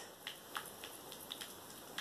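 A spoon stirring a sticky honey and castor-oil mixture in a bowl, heard as a few faint, irregular clicks of the spoon against the bowl.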